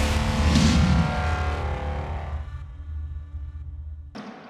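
Cinematic intro sting: a deep rumble with held tones ringing on, slowly fading, with a brief whoosh about half a second in.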